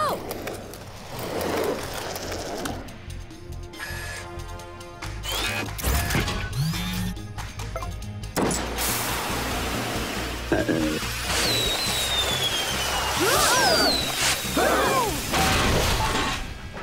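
Cartoon sound effects over background music. Rocket-powered shoes fitted under a giant robot's feet make mechanical noises, a loud crash comes about eight and a half seconds in, and falling whistles follow.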